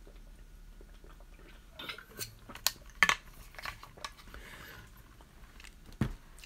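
A few light clicks and clinks of small hard objects, the sharpest about three seconds in, over faint room noise.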